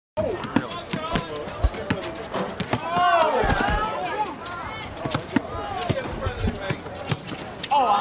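A basketball bouncing on a hard court, with repeated sharp bounces at an irregular pace, among people's voices and shouts.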